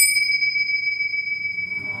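A small handheld Zen bowl bell on a handle, struck once and left ringing: one clear, high, steady tone with a fainter higher overtone, slowly fading. It is rung to mark a line of a group invocation.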